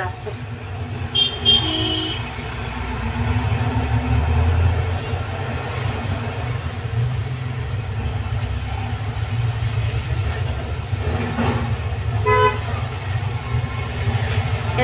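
Road traffic: a steady low engine rumble with two short horn toots, one about a second and a half in and one near the end.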